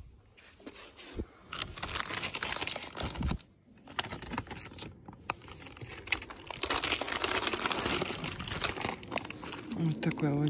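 Clear plastic flower sleeves around potted orchids crinkling as they are handled. The crinkling comes in two spells, one from about a second and a half in and a longer one in the second half.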